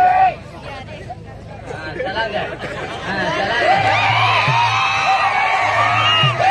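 Voices of performers speaking through overhead stage microphones, with crowd chatter underneath. After a quieter stretch, the voice becomes loud and continuous from about halfway through.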